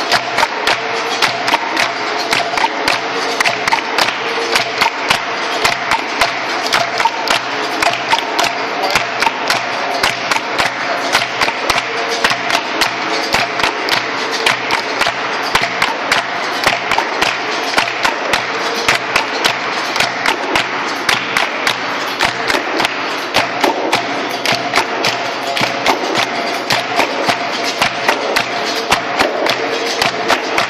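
Capoeira bateria playing: several berimbaus twanging over an atabaque drum, with hand clapping keeping a steady, quick beat.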